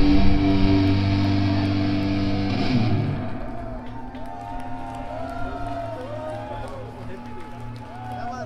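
Black metal band's distorted electric guitars ringing out on a held final chord that ends about three seconds in, followed by steady amplifier hum and scattered voices and shouts from the audience.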